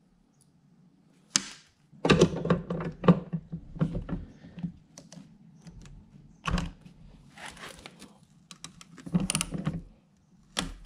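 Metal clinks and knocks as a pulley and nut are handled on a mower deck spindle and a cordless ratchet is fitted to the nut. The clicks come irregularly: a sharp click about a second in, a busy run of knocks from about two to five seconds, one knock later on, and a short cluster near the end.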